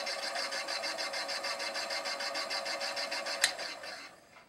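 Rollimat pivot polisher running, polishing a clock wheel's pivot with a fast, even mechanical rhythm. Near the end a switch clicks and the machine runs down.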